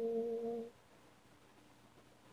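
A woman's solo a cappella voice holding the song's final note with a slight waver, stopping about two-thirds of a second in. The rest is near silence.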